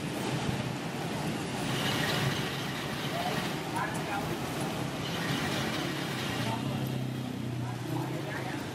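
Street traffic on a rain-soaked road: motor scooters and cars passing, with a steady wash of rain and tyres on wet pavement. A scooter's engine hum grows louder near the end.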